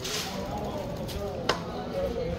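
Street ambience with faint, indistinct voices and a single sharp knock about one and a half seconds in.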